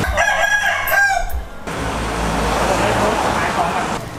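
A loud, wavering animal call with a strong pitch lasts about the first second and a half and cuts off sharply. Steady background noise follows.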